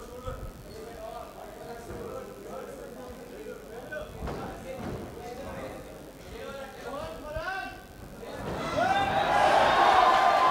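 Live crowd and cornermen shouting and calling out around a cage fight. The shouting swells into a loud burst of crowd yelling about eight and a half seconds in.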